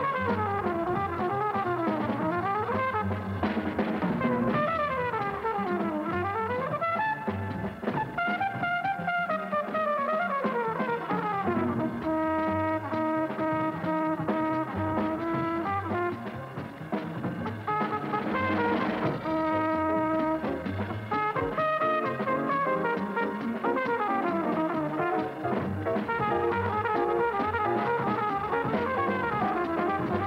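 Flugelhorn playing a West Coast jazz solo: quick runs that sweep up and down, a stretch of long held notes in the middle, then more runs.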